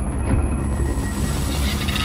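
Cartoon sound effect: a steady low rumble with a hiss that swells toward the end, as tinkling music comes in during the last half-second.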